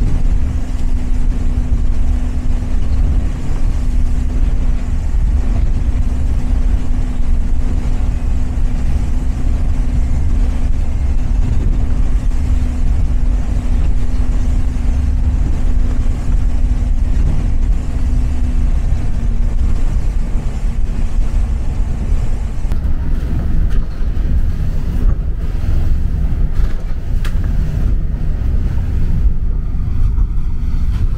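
Motor yacht running at speed: a steady drone from the boat, with a held hum that fades about two-thirds of the way through, over the rush of water and spray along the hull.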